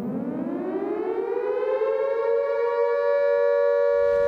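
Electric civil-defence siren sounding the continuous 'Attention everyone' warning signal. It winds up, rising in pitch over the first couple of seconds, then holds a steady tone.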